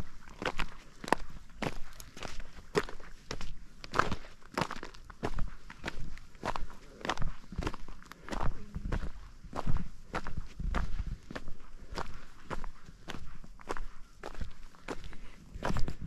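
Footsteps crunching and clattering over loose, flat shale stones, a steady walking pace of about two steps a second. A low rumble sits underneath, strongest about two-thirds of the way through.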